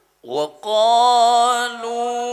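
A solo voice chanting Quran recitation in the melodic style. After a brief silence comes a short syllable, then one long held note that wavers slightly.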